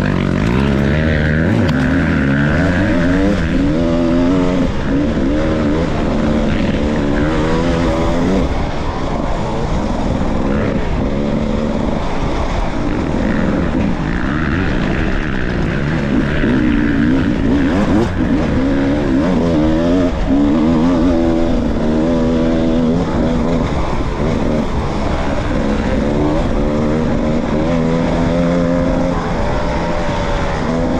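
Off-road dirt bike engine ridden hard on a rough trail, its revs rising and falling over and over with the throttle.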